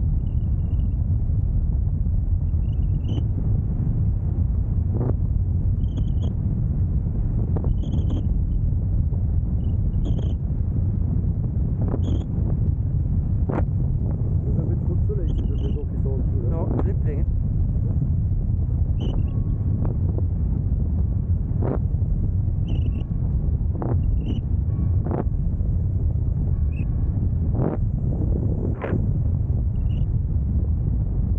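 Airflow buffeting the camera's microphone as a tandem parachute glides under canopy: a steady low rumble with short clicks scattered through it every second or two.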